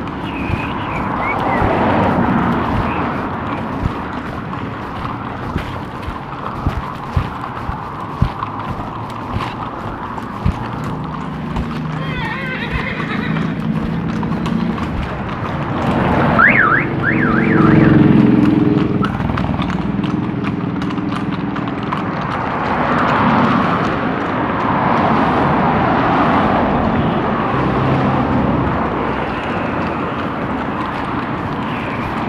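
Street traffic going past, with one vehicle's engine loudest about two-thirds of the way through.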